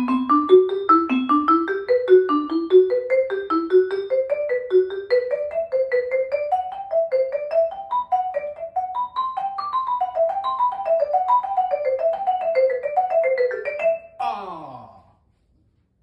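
Vibraphone played fast with two mallets: a rapid run of short struck notes, several a second, climbing gradually in pitch. About 14 s in the run cuts off suddenly and is followed by a brief falling pitched glide.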